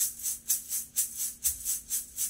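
A pair of maracas shaken in a steady rhythm of about four strokes a second, each stroke a short bright rattle, played close to a studio microphone as a recorded shaker part.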